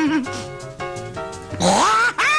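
Cartoon character's gibberish voice sliding in pitch, breaking off just after the start. A run of short, steady musical notes follows, then a loud rising vocal cry near the end.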